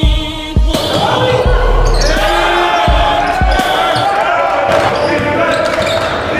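A basketball bouncing on a gym court, a few sharp knocks, over the noisy echo of a large hall full of voices and shouts.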